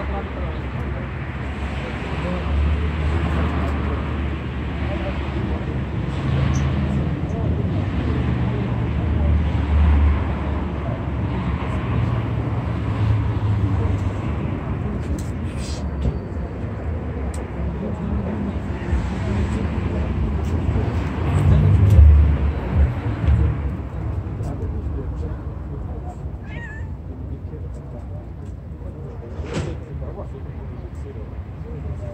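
Domestic cats meowing, over a steady low background rumble.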